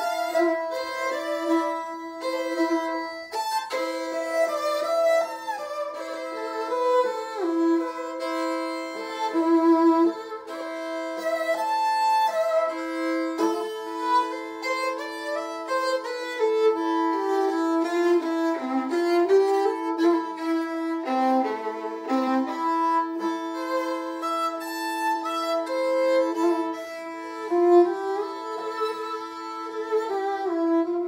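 Violin and viola playing a slow classical duet: one instrument holds a steady note for long stretches while the other moves slowly above and below it.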